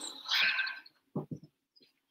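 Rustling of a towel worn as a haircut cape as the person wearing it gets up and moves, followed a moment later by three short soft thumps.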